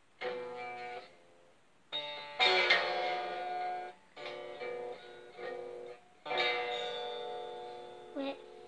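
Stratocaster-style electric guitar strummed about five times, each chord ringing out and fading before the next.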